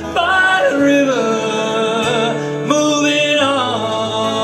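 A man singing long, wavering notes without clear words over an acoustic guitar. Three vocal phrases slide between pitches.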